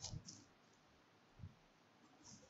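Faint clicks of computer input while a value is typed into a table: a short cluster of clicks at the start and a single click about one and a half seconds in.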